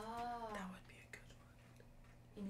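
A person's drawn-out spoken "yeah" trailing off and ending under a second in, then near silence.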